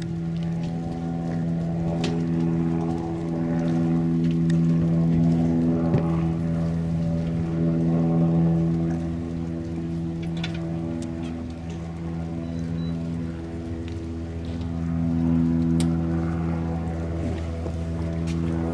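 Goodyear blimp's propeller engines droning steadily overhead, a low even hum that swells and eases slightly as it passes.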